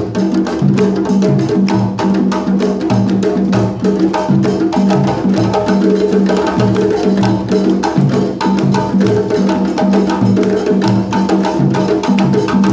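A djembe drum circle: many hand drums played together in a fast, steady interlocking rhythm, with deep bass strokes repeating underneath.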